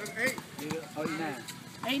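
Men's voices calling out across an outdoor basketball court, several short shouts, with one faint knock a little before the middle.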